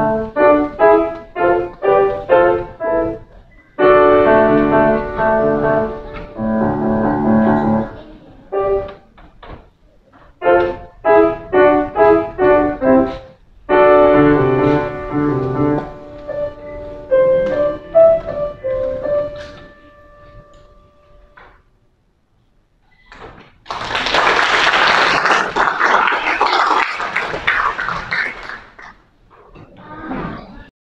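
Bösendorfer grand piano played in short detached chords and quick runs, with stretches of held chords, closing on notes that ring and fade about twenty seconds in. After a brief pause, an audience applauds for about five seconds.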